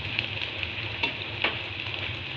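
Tempe frying in hot oil in a metal wok, sizzling steadily, with a couple of light clicks of the slotted spatula against the wok as the pieces are stirred and turned.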